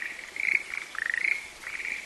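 Frogs calling in a chorus from flooded rice paddies: short, rattling croaks repeating several times a second.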